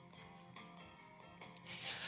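Faint music bleeding through an isolated vocal track in the gap between sung lines: quiet leftover backing instruments with a few steady held notes, then a short noisy swell near the end just before the voice comes back in.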